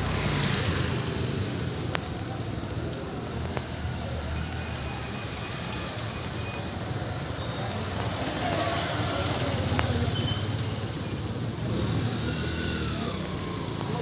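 Outdoor traffic sound: small motor vehicle engines such as motorcycles and auto-rickshaws running steadily, with people's voices faintly in the background.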